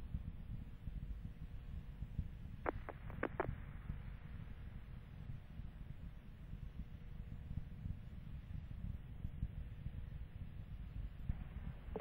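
Quiet background of a broadcast audio feed: a low steady rumble with a faint hum, and three short clicks about three seconds in.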